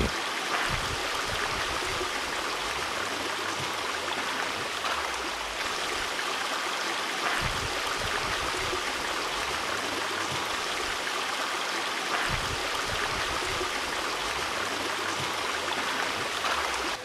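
Steady sound of running water from a stream, an even wash with no breaks.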